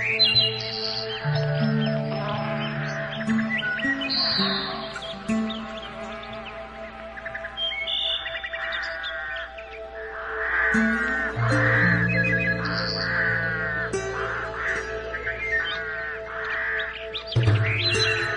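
Calm ambient music of long held notes, with wild birds chirping and singing over it in repeated short phrases throughout.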